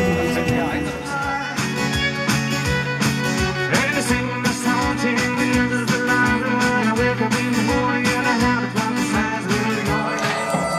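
Acoustic guitar and violin playing a folk tune together, with a steady strummed beat coming in about a second and a half in.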